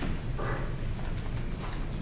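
Scattered light clicks and taps over a low room hum, with no one speaking.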